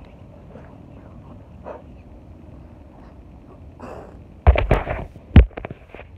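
Handling noise on a phone's microphone: a short cluster of loud thumps and rubbing beginning about four and a half seconds in, the loudest bump near the end, over faint background hiss.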